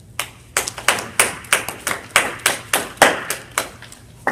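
Brief applause from a few people: a dozen or so separate, sharp claps at about three or four a second, stopping shortly before the end.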